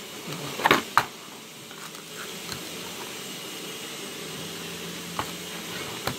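Boxes being handled on a table: a few short clicks and knocks about a second in, and another single click near the end, over a steady low hiss.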